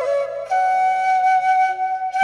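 Background music: a flute melody slides briefly, then holds one long note over soft, sustained low accompaniment.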